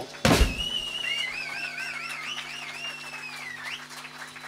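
A sharp knock, then a high wavering tone, warbling up and down for about three seconds and ending in a quick upward glide, over a steady low hum.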